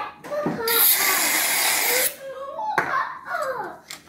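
Aerosol can of whipped cream spraying onto French toast: one loud hiss lasting about a second and a half. Voices and laughter before and after it.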